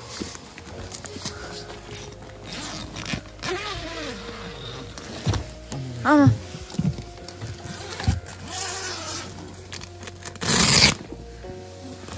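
Background music over the rustling of a tent's plastic-coated fabric being handled, with a few brief voices. Near the end there is a loud rasp lasting about half a second.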